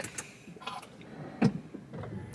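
Quiet car cabin with a few faint handling noises and one short, sharp click about one and a half seconds in.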